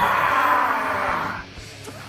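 A man's long, loud drawn-out yell of "aaah", held for about a second and a half and falling slightly in pitch before it stops.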